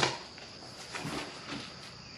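Cardboard shipping box being opened by hand: a sharp snap as the flaps are first pulled apart, then soft rustling and scraping of cardboard.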